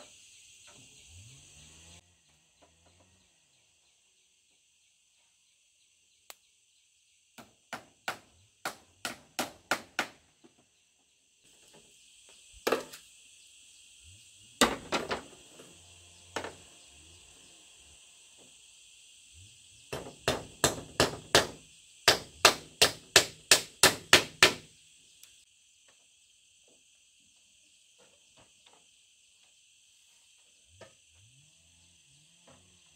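Hammer blows on a bamboo roof frame, coming in quick runs of several strikes with single knocks between them; the longest run is near the end. A steady high chirring of insects runs beneath part of it and cuts off abruptly at edits.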